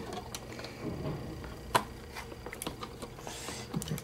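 Scattered light clicks and knocks of a desktop RAM module being pressed and worked into a motherboard's memory slot, with one sharper click a little under two seconds in.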